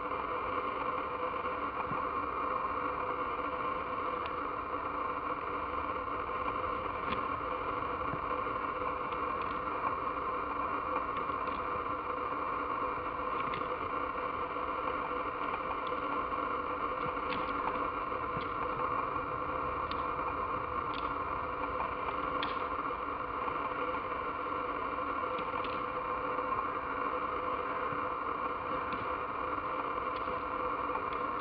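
Faint, irregular clicks of red deer stags' antlers knocking together as the locked stags push and twist, over a steady drone.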